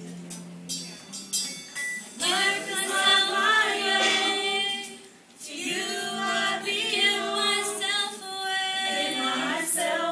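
Small mixed church choir singing a slow worship song, held sung phrases with a short break about halfway through.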